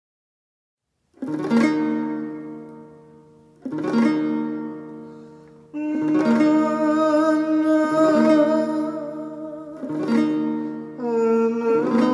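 A kithara, a large wooden ancient Greek lyre, strummed in full chords after about a second of silence: once about a second in and again near four seconds, each chord left to ring and fade. From about six seconds, further strummed chords are joined by a sustained wordless voice that wavers and glides in pitch.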